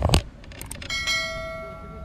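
A sharp click, a few lighter clicks, then about a second in a single bell ding that rings on steadily: the click-and-ding sound effect of a YouTube subscribe-button animation.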